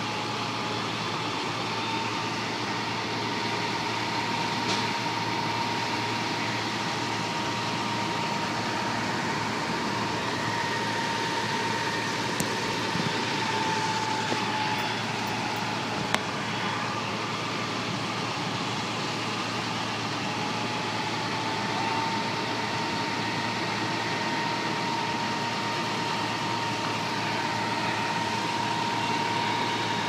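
Fire truck running at a fire scene: a steady engine drone with a faint high whine that wavers slightly in pitch. Two brief sharp clicks come near the middle.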